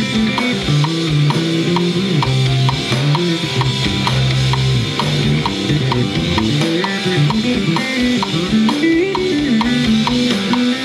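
Instrumental prog-metal music: a six-string electric bass plays a moving line over a drum kit, with a steady pattern of about three ticks a second on top.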